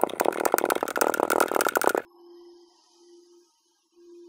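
Kinetic sand crunching and crackling in fast, dense clicks as a wooden tool presses into it inside a glass. About two seconds in, the sound cuts off abruptly, leaving only a faint low hum.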